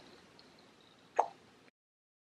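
One short plop from a squeezed bottle of hair styling product as it dispenses into the palm, over faint room hiss. The sound cuts out abruptly soon after.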